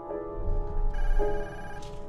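Apartment intercom buzzer sounding for about a second, over soft piano music.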